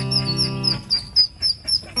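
Ducklings peeping over background music: short, high, rapid peeps about four a second throughout.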